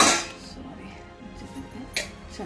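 A steel vessel clanking and scraping against the rim of a steel pot as cooked rice is tipped in, loudest right at the start and dying away within half a second, with a second short knock near the end. Background music plays throughout.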